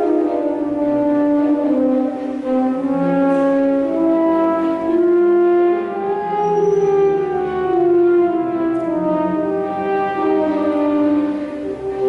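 Live orchestra playing, with a French horn prominent, holding long sustained melody notes that move in smooth steps over the accompaniment.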